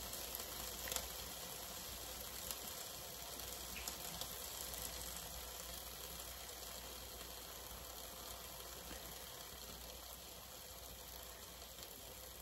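Faint steady sizzling of hot steaks in a pulled-out air fryer basket, slowly fading, with a few tiny clicks.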